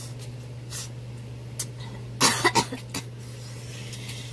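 A person coughing in a quick run of about four coughs a little past two seconds in, a reaction to the burn of extra-spicy fire noodles.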